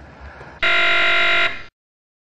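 A loud, steady buzzer tone lasting about a second, starting just over half a second in and cutting off sharply, followed by dead silence.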